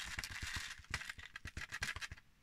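Confetti being poured from a plastic tub into a clear plastic pocket: a rush of small pieces rattling against the plastic, then a run of separate clicks as the last pieces drop.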